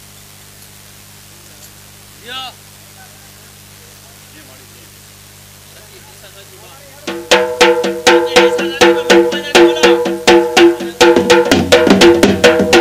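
A low steady hum with a brief voice a little over two seconds in. About seven seconds in, large dhol barrel drums struck with sticks start up, a fast rhythm of sharp strokes over steady held tones.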